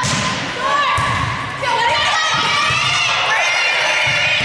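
A volleyball struck twice, with sharp hits about a second apart, amid players' voices calling and shouting in an echoing gym hall.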